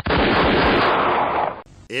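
A loud, dense burst of crackling noise at a steady level for about a second and a half, cutting off abruptly: a blast-like sound effect spliced into a radio show's intro montage.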